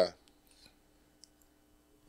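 A man's voice trails off at the start, then near silence: a faint steady hum with a few small faint clicks, one about a second in.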